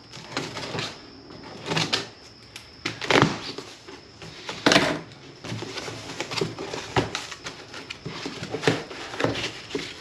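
Cardboard shipping box being opened by hand: packing tape slit with scissors and the flaps pulled open, a run of irregular rustles, scrapes and rips, with a foam insert pulled out near the end.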